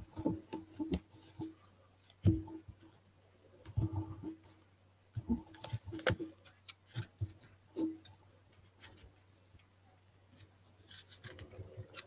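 Tarot cards being handled on a cloth-covered table: irregular soft taps, clicks and rubs as the deck is shuffled and cards are set down, with a lull of a couple of seconds near the end.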